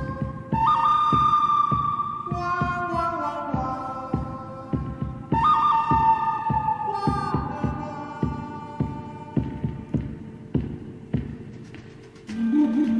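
Background music: a held, gliding lead melody over a steady beat.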